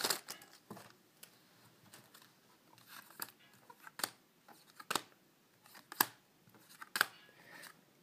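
Foil booster pack crinkling briefly at the start, then Yu-Gi-Oh trading cards being flicked through one at a time, a short sharp snap about once a second.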